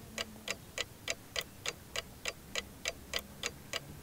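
Quiz countdown timer sound effect: a clock ticking evenly, about three ticks a second, while a team thinks over its answer.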